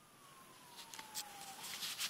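A faint single tone gliding slowly down in pitch for about a second and a half, while rustling and sharp clicks of the hand-held camera being moved grow louder toward the end.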